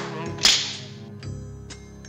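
A cartoon sound effect of a spring mousetrap snapping shut: one sharp crack about half a second in, with a hissing tail that fades quickly. It sounds over the jazzy orchestral score.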